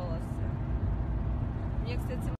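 Steady low rumble of a car's cabin in slow traffic, with a faint voice over it.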